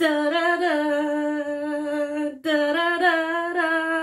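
A voice singing long, held notes with small steps in pitch, starting suddenly and breaking off briefly about two and a half seconds in.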